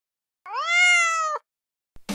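A single cat meow, about a second long, rising in pitch at the start and then levelling off.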